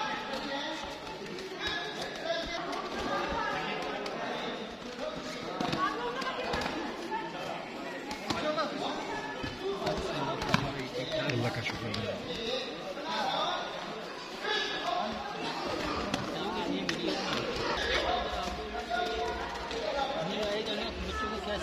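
Many voices chattering at once in a large hall, no single speaker clear, with scattered knocks and taps and one sharp knock about ten seconds in.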